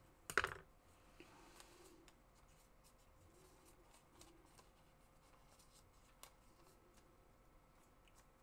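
Faint paper rustling from handling a booklet of imitation gold leaf, with one brief, louder brushing rustle about a third of a second in and a small click around six seconds.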